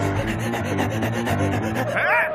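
Cartoon sound effect of quick, rapidly repeated rasping strokes, several a second, over background music.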